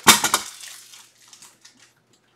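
Hard plastic being handled: a sharp crackle of clicks, then fainter clicks dying away over about a second and a half, as a magnetic one-touch card holder is worked to take a card.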